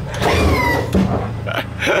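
A woman's high vocal exclamation, then laughter near the end, over a low steady hum.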